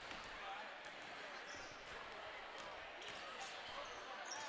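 Faint basketballs bouncing on a hardwood gym floor during warm-ups, scattered soft knocks in a large hall, with distant voices in the background.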